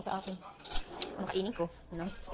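Several quick clinks and knocks of dishes and cutlery being handled, about midway through.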